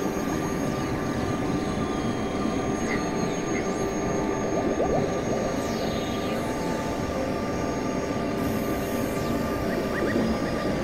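Experimental electronic synthesizer drone: several steady held tones over a dense noisy rumble, with occasional falling pitch sweeps.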